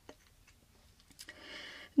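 Near silence in a pause between whispered words, with a couple of faint clicks and then a soft, breath-like hiss rising shortly before speech resumes.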